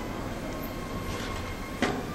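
Steady hiss of room and sound-system noise in a lecture hall, with a single short click near the end.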